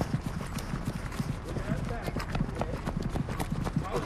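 Quick, irregular running footsteps, several a second, with faint voices in the background.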